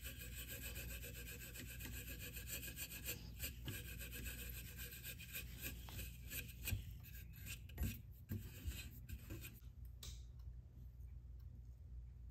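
Steel wool rubbed quickly back and forth over the wooden horn of a hand plane's tote, a scratchy rubbing with a couple of light knocks, stopping about ten seconds in.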